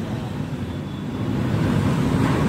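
A motor vehicle's engine running with a steady low hum, growing slightly louder.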